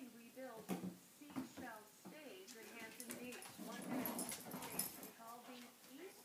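Havanese puppy whimpering and yipping in short cries that rise and fall in pitch while it plays with a bigger dog. Metallic jingling and clicks about three to five seconds in come from a dog's chain collar and tag.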